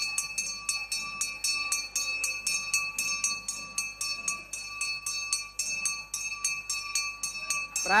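Temple hand bell rung continuously in a fast, even rhythm, about four or five strikes a second, its ringing tones sustained between strikes. It starts abruptly and stops as chanting resumes.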